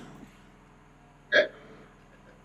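A single brief vocal sound from a person, about a second and a half in, over quiet room tone.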